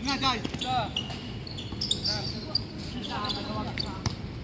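Basketball game sounds: a ball bouncing on a hard court a few times, sneakers squeaking, and players calling out.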